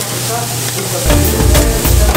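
Pupusas frying on a large flat griddle, a dense steady sizzle. About a second in, background music with a heavy bass comes in over it.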